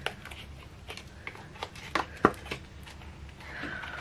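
Silicone cake mould being flexed and peeled away from a cured epoxy resin casting, giving scattered small clicks and crackles as it releases, the sharpest a little after two seconds in.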